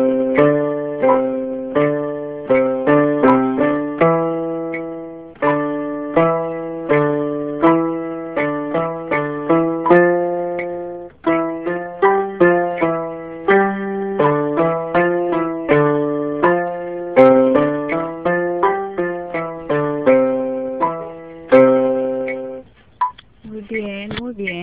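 Electronic keyboard playing a slow two-handed dexterity exercise: low and high notes sound together, changing about once or twice a second. The playing stops about a second before the end.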